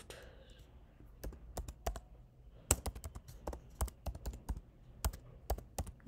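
Keystrokes on a computer keyboard: irregular clicks of a short phrase being typed, sparse at first and coming faster from about a second in.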